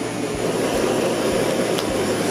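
Handheld butane gas torch burning with a steady hiss, searing slices of char siu pork.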